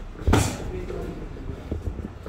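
Boxing sparring: a loud smack of a gloved punch landing about a third of a second in, followed by a much fainter knock near the end.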